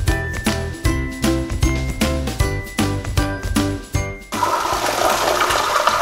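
Upbeat background music with a light, evenly repeated melody and a steady beat. About four seconds in, it cuts off sharply to a Kohler urinal flushing, a loud rush of water. The water pressure is high enough that the water splashes off the PeePod screen.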